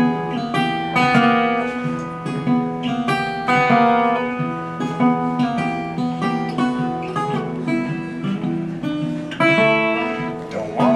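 Resonator guitar picked in a blues style as a solo instrumental intro: a steady run of low bass notes under higher plucked melody notes.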